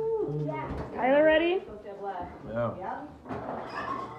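Indistinct chatter of adults and children in a kitchen, with a higher child's voice loudest about a second in and a couple of light knocks near the end.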